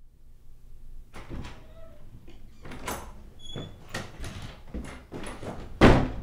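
Wooden door with a glass pane being opened and closed: a run of clicks and knocks from the handle and latch with footsteps, then the door shut with a loud knock near the end.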